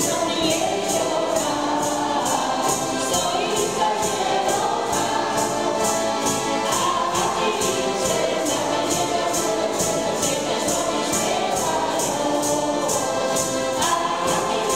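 A mixed group of men and women singing a song together, backed by accordions and a steady high percussion beat.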